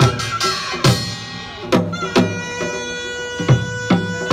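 Korean traditional dance music: drum strikes at an uneven rhythm under a sustained melodic note from a wind or bowed instrument.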